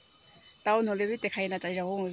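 Steady high-pitched insect drone in dense vegetation, unbroken under a woman's voice that starts less than a second in.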